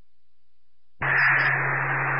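A fire-dispatch radio channel opening about a second in: a steady static hiss with a low steady hum, a keyed transmission carrying no voice yet.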